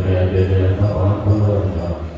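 Low voices chanting a mantra in long, held notes on a deep steady pitch.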